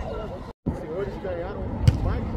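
People talking and calling out on an outdoor training pitch, with a brief cut to silence about half a second in. Near the end there is one sharp thump, a football being struck.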